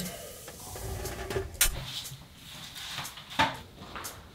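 Knocks and clatters of furniture being searched, cabinet doors and drawers being handled: two sharp knocks, about a second and a half in and near the end, over faint rustling.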